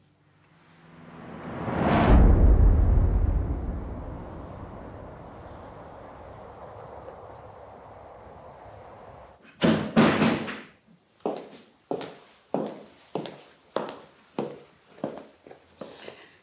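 A swelling whoosh that lands in a deep boom about two seconds in and slowly dies away, a scene-transition sound effect. From about ten seconds in comes a run of sharp, evenly spaced knocks, about two a second.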